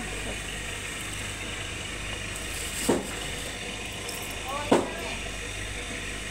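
Supermarket indoor ambience: a steady low hum and hiss, with faint voices of other people and two short, louder sounds, one about three seconds in and one near five seconds.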